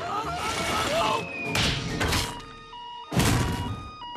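Cartoon sound effects: a voice crying out, a whoosh about a second and a half in, then a loud crash just after three seconds as a body lands in a pile. Under it runs a two-tone siren from the emergency hippos' warning lights.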